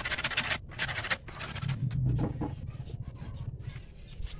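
Handsaw cutting dry driftwood by hand: raspy back-and-forth strokes, about one a second, with the last stroke ending about a second in. After that, fainter, lower sounds.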